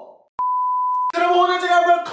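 A single electronic bleep, one steady pure tone of about 1 kHz, starting with a click and lasting under a second before cutting off abruptly.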